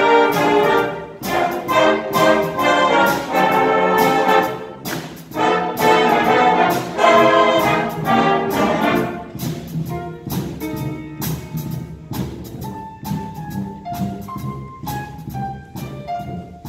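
Youth concert band of saxophones and brass playing. Full, loud ensemble chords with rhythmic accents thin out after about ten seconds to a single melodic line of held notes over a quieter low accompaniment.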